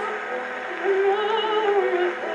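An acoustic Edison console phonograph plays a Diamond Disc record of a soprano singing an operatic song, her voice with a wide vibrato. The sound is thin, with no deep bass, typical of acoustic horn reproduction. The voice rises to a louder, higher note a little under a second in.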